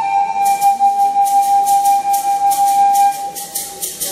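A nose flute holding one long steady note that stops about three seconds in. About half a second in, a rattle joins, shaken in an even rhythm of about four shakes a second.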